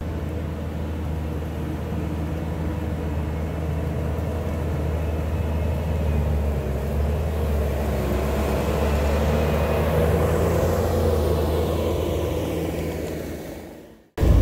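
Bobcat T650 compact track loader's diesel engine running steadily as the machine pushes a pile of mud and brush with its bucket, fading out near the end.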